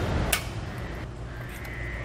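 A click as the breakaway switch pin is pulled, then from about a second in a faint steady whine over a low hum: the Hydrastar 1600 PSI hydraulic brake actuator's pump running to push brake fluid through the lines while the caliper is bled.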